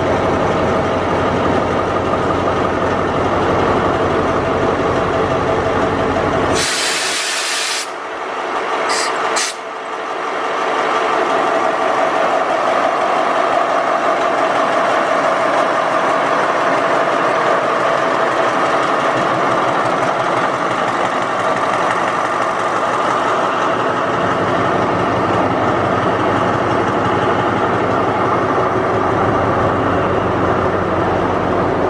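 Idling diesel-electric locomotive engine (a State Railway of Thailand Alsthom ALS-class unit) running steadily. About seven seconds in, compressed air hisses loudly for about a second, then gives two short hisses, as the air brake hose is parted at the coupling. The locomotive then moves off with its engine still running.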